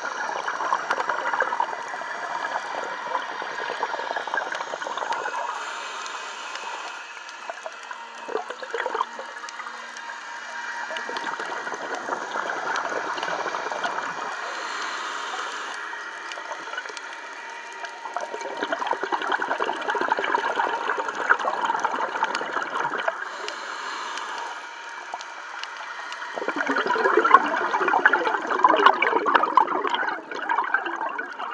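Scuba diver's exhaled breath bubbling out of a regulator, heard underwater: bubbling bursts of about four to five seconds, one per breath, with quieter gaps between them.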